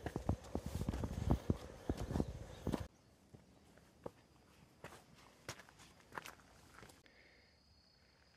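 Footsteps on a dry dirt and rock trail, close and quick for about the first three seconds, then stopping suddenly to a much quieter stretch with only a few faint, sparse steps.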